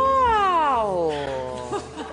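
A long drawn-out vocal "oooh" of shocked amusement. It swoops up in pitch at the start, then slides slowly down over nearly two seconds.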